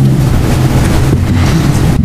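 Loud, steady low hum with an even hiss over it: constant background noise in the audio feed.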